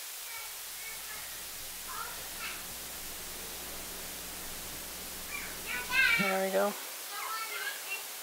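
A steady low electrical hum that cuts off suddenly about six seconds in. Faint voices sound in the background throughout, and as the hum stops there is a short, loud voice-like sound.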